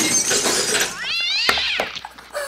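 A burst of clattering noise, then children shrieking with excitement: a high cry that glides steeply upward about a second in, and a second one falling away near the end.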